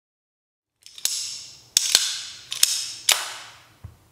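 Paragon automatic switchblade knife snapping, five sharp metallic clicks each with a brief ringing tail.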